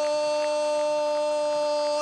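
Male football commentator's drawn-out goal cry, a single "gol" held on one steady pitch, breaking off near the end.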